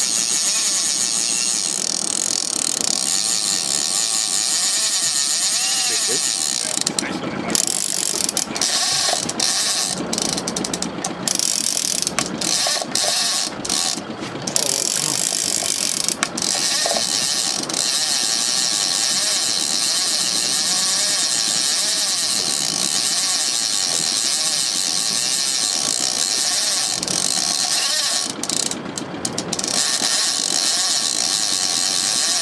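Shimano Moocher Plus single-action mooching reel's clicker ratcheting rapidly and steadily as the spool turns with a hooked fish on the line. The clicking stutters and breaks off several times in the middle and again near the end.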